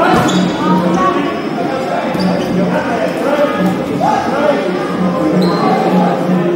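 Dodgeballs bouncing and thudding on a wooden court during a match, with players' shouts and brief high squeaks, echoing in a large hall.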